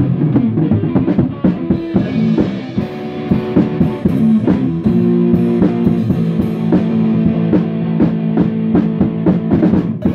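Electric guitar and drum kit jamming together: guitar chords ringing and changing over a busy drum beat with cymbals.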